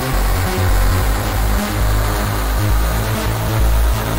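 Electronic music track built from synths: a heavy synth bass line stepping between notes under dense, bright synth layers, at a steady loud level.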